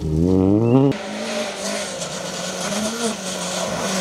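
Rally car engine revving hard and rising in pitch under acceleration. About a second in it cuts off suddenly to a steadier, quieter engine note with a hiss of tyre and gravel noise over it.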